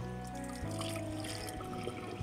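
Background music with steady held notes, over the softer trickle of thick butter-fruit (avocado) juice pouring into a steel tumbler.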